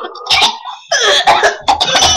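A person coughing several times in quick succession.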